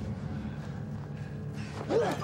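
Low, steady drone of a horror film score, with a short grunt near the end.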